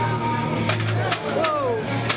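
Indistinct voices of people, with one drawn-out falling call near the end and a few sharp knocks about a second in, over a steady low hum.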